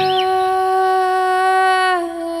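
A woman's voice holding one long, steady sung note, while the low guitar chord beneath it stops right at the start.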